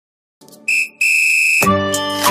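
Silence, then two steady high-pitched whistle-like tones, a short one and then a longer one. Music with a beat comes in at about one and a half seconds.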